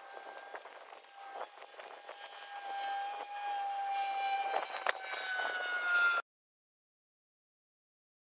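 A steady pitched motor drone that grows louder and sinks slightly in pitch near the end, with scattered clicks and rustles of landscape fabric being handled. The sound cuts off suddenly about six seconds in.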